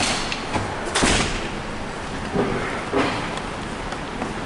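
Footsteps and rustling handling noise from a handheld camera carried at walking pace through a concrete parking garage. It is a few dull thumps and scuffs, the loudest about a second in.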